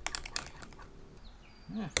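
A stirring utensil clicking and scraping against a glass Pyrex measuring cup as liquid plastisol is mixed, with a couple of sharp clicks in the first half-second and quieter ticks after.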